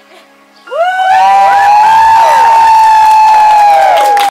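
A crowd cheering and whooping in many high voices. It breaks out loudly about a second in and holds.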